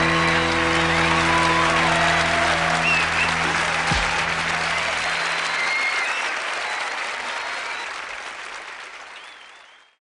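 Audience applause over the band's held final chord of a rock song. The chord stops about five seconds in, and the applause then fades out.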